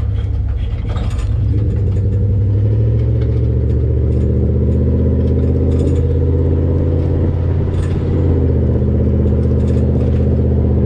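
Exhaust of a 2000 Dodge Ram pickup, heard right at the tailpipe, running steadily while the truck drives along. The low exhaust note firms up and gets a little louder about a second and a half in, with a few light rattles over it.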